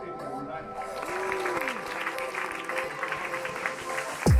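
A room full of people clapping, starting about a second in, over steady background music.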